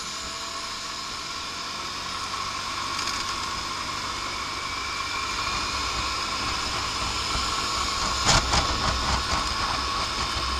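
Lance Havana Classic 125 scooter's small single-cylinder engine and drive whining as it pulls away from a stop, the note rising and getting louder as it gathers speed, with wind rumbling on the microphone. A brief clatter of knocks about eight seconds in.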